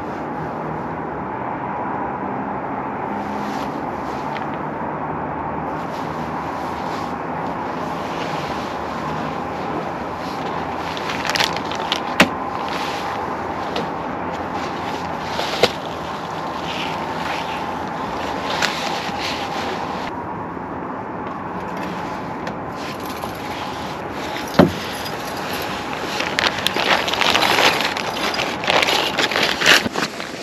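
Steady, distant city traffic hum, with occasional sharp clicks and rustles of camping gear being handled and packed. The crackling rustle grows busier near the end.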